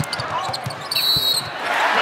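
A basketball dribbled on a hardwood court: a series of short bounces over arena crowd noise, with one brief high-pitched sneaker squeak about a second in.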